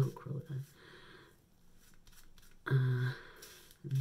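Manual razor scraping through wet hair on the scalp in short, faint strokes. A short voiced 'mm' sounds about three seconds in.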